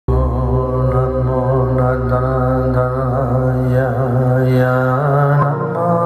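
A mantra chanted over a microphone, long held notes that waver, over a steady low drone that shifts up in pitch about five seconds in.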